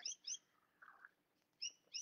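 Bird chirping: a few short, high chirps at the start and a pair again near the end.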